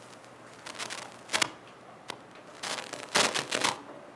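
Brief bursts of rustling and handling noise in two clusters, the first about a second in and a louder one about three seconds in.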